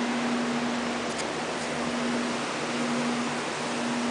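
Steady machine noise: an even hiss with a constant low hum.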